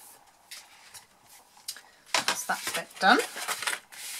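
Cardstock being handled and pressed flat on a craft mat: faint rustles and a few light clicks at first, then louder knocks and rubbing of card against the mat from about two seconds in.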